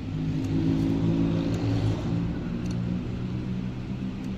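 An engine-like sound running, a low pitched drone whose pitch steps up and down.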